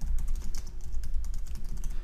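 Typing on a computer keyboard: a quick run of keystrokes, several clicks a second, over a steady low hum.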